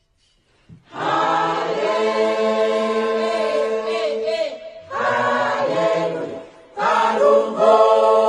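A choir singing an Oshiwambo gospel song in three phrases with short breaks between them, coming in about a second in after a brief silence.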